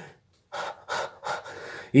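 A man's audible breathing in a pause between phrases of speech: a brief silence, then a few short, noisy breaths before he speaks again.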